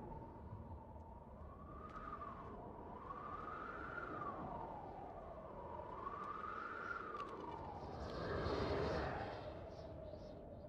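Eerie wailing tone from a film soundtrack, slowly swelling up and falling back in pitch three times like a distant siren or howling wind. A louder rushing swell comes about eight seconds in and fades by the end.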